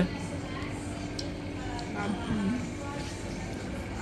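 Faint background voices, one short stretch of talk about halfway through, over a steady low hum of ambient noise.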